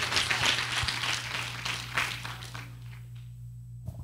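A congregation applauding, the clapping dying away over the first three seconds, over a steady low hum.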